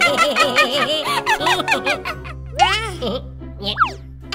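Cartoon voices chanting a run of short "oh, oh, oh" syllables over light children's background music. About halfway through, the chanting gives way to a few quick cartoon sound effects that glide sharply up and down in pitch.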